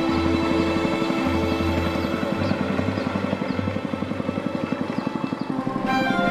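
Long-tail boat motor, a small engine driving a propeller on a long shaft, running with a fast, even chugging pulse as the boat goes by, under background music.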